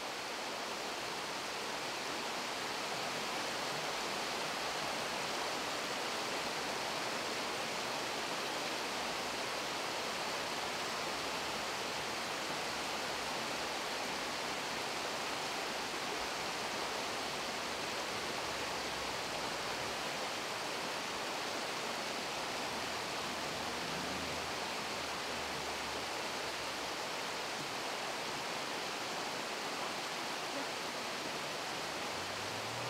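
Water pouring over a river weir: a steady, even rush of falling water.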